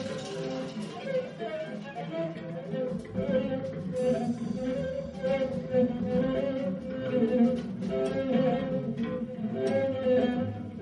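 Free-jazz ensemble playing live: a viola bowed hard over piano in dense, busy music, with a held note running through much of it and many short, sharp attacks.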